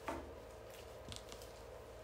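Faint handling of a woody viburnum stem as its lower side shoots are taken off: a short click at the start and a brief crackle about a second in.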